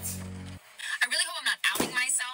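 Background music with a low bass line cuts off about half a second in, a voice follows, and near the end comes a single thump as books are clapped shut.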